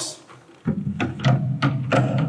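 Several short clicks and knocks as a Yamaha powered speaker is hooked onto the hooks of a metal mounting bracket, over a steady low hum that comes in about two-thirds of a second in.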